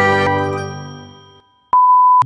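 The last chord of the intro music rings on and fades away, then a single loud electronic beep at one steady pitch cuts in near the end.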